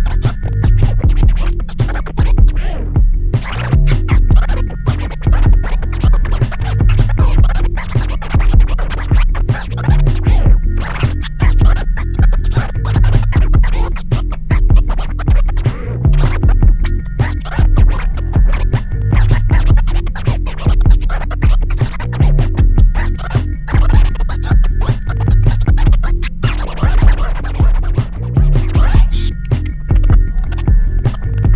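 Turntable scratching: a vinyl record worked back and forth by hand and cut in and out with the mixer's fader, in fast, dense strokes over a steady hip hop beat.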